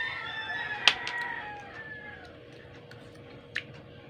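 A rooster crowing: one long call that tails off, falling in pitch and fading out about two and a half seconds in. A sharp click comes about a second in, and a fainter one near the end.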